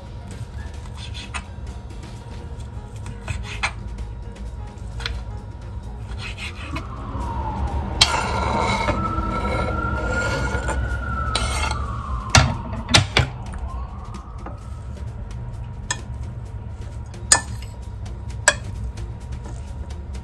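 Knife tapping through cooked beef steak on a cutting board in scattered sharp knocks, then a cluster of louder clacks about twelve seconds in as the knife pushes the pieces off the board into a bowl, and a couple of clinks of a utensil against the bowl near the end. Background music plays throughout, and in the middle a wailing tone rises and falls in pitch.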